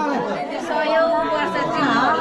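Several people talking over one another at once, a lively mix of overlapping voices.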